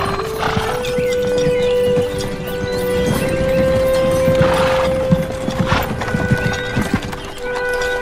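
A horse's hooves clip-clopping on a dirt road as it pulls a wooden-wheeled wagon, under a film score of long held notes.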